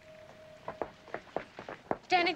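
Footsteps on a paved path, a series of sharp irregular steps through the second half, with a faint steady tone that stops about a second in.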